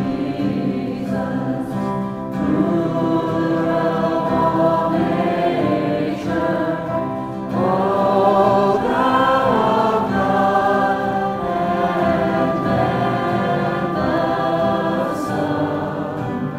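A congregation singing a worship song together, led by a singer with an acoustic guitar. The singing gets louder about halfway through.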